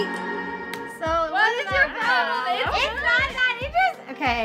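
The tail of a held a cappella chord from women's voices fades in the first second, then several women laugh and exclaim in high, excited voices.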